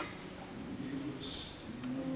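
A bass voice singing softly over held piano notes, in a quiet passage of an old Russian romance. A short hissed 's' comes about a second and a half in, followed by a held low sung note.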